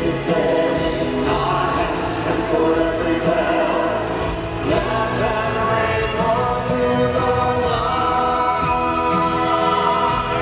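A live rock band and orchestra playing with a choir of backing singers holding long notes over a steady drum beat.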